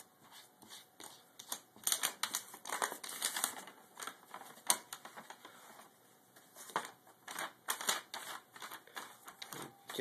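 Sheets of paper rustling and crinkling in irregular bursts as a cat paws at them and lifts them, with scattered sharp ticks, one sharper tick near the middle.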